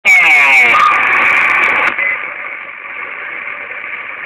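Two-way radio receiver, a Uniden HR2510 10-metre transceiver, picking up a signal. Loud, distorted noise with a garbled, warbling falling tone runs for about two seconds, then drops to a steadier, quieter static hiss.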